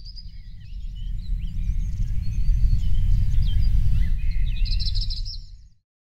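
Birdsong, many short chirps and whistles, over a loud low rumble. It swells up and then fades out near the end, as part of an animated outro.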